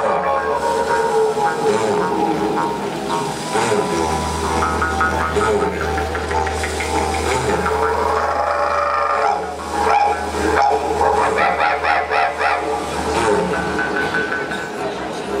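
Several didgeridoos played together live: a steady low drone, with a deeper drone coming in strongly about four seconds in and wavering higher overtones above it.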